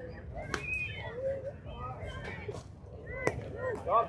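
Faint chatter of players and onlookers around a softball field, with a sharp crack about half a second in and a louder crack a little after three seconds.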